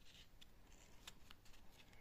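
Near silence: faint handling of glossy magazine pages, a few soft ticks.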